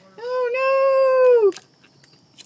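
A single long, high-pitched cry held for about a second, rising at the start, holding steady, then falling away as it stops.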